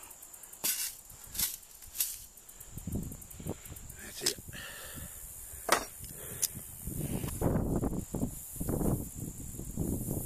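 Sharp metal clicks, about six of them, as locking vise grips clamp on and pull rebar stakes out of the ground at the foot of a chain-link fence. From about seven seconds in come louder scraping and rustling as the wire mesh is pulled up through dry grass.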